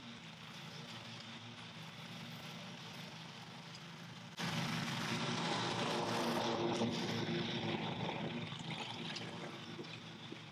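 Engine of a commercial walk-behind lawn mower running steadily while mowing, distant at first, then much louder from about four seconds in as it passes close, easing off again near the end.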